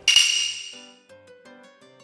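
A bright chime sound effect, struck once and ringing out over about a second, followed by quiet background music.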